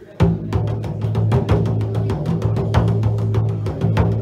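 Bodhrán beaten with a tipper, kicking in about a quarter second in with a fast steady rhythm of about five or six strokes a second over a low sustained ring: the drum intro of a song.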